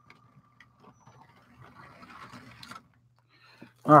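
Motorised LEGO train running on plastic LEGO track: a faint motor whine and a light mechanical rattle of gears and wheels, louder for a stretch in the middle.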